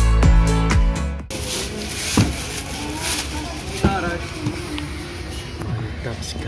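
Electronic music with a heavy, regular beat that cuts off abruptly about a second in. It gives way to room noise with rustling and a few sharp knocks as shrink-wrapped cardboard graphics card boxes are handled.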